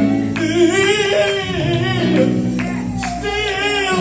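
Live gospel music: a man's lead voice sung with vibrato into a microphone over a band with electric bass guitar.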